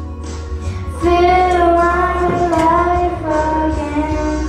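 A young girl singing into a microphone over instrumental accompaniment. After a short pause she comes in about a second in with long held notes.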